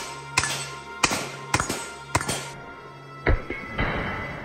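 Palmetto State Armory AK-47 GF3 rifle (7.62×39) fired in quick single shots: four shots about half a second apart, a pause of about a second, then two more, each with an echoing tail. Background music runs underneath.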